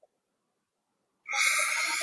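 About a second of dead silence, then a breath drawn in close to a headset microphone, a hissy rush lasting under a second.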